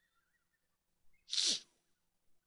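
A person sneezing once, a short loud burst with a falling pitch, about a second and a half in.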